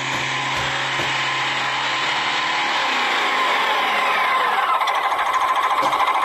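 Steady mechanical running noise, like a small motor or engine, growing slightly louder with a fast rattling rhythm near the end.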